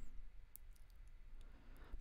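Quiet room tone with a few faint computer mouse clicks, one about half a second in and a couple near the end.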